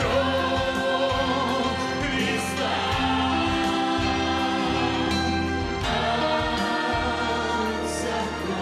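Church worship team and choir singing a slow worship song together, with sustained chords that change about every three seconds.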